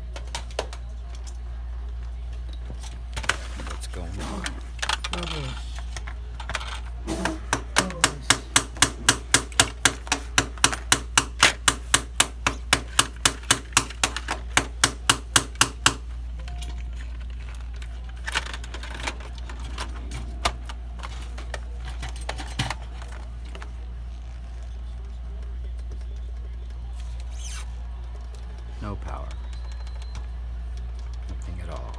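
Hands handling a PS4 power supply unit and the console's opened chassis: scattered plastic and metal knocks, with a rapid run of evenly spaced sharp clicks, about three a second, lasting several seconds through the middle.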